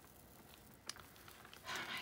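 Faint rustle of a clear sticker being peeled back off a paper journal page, with a single sharp tick about a second in.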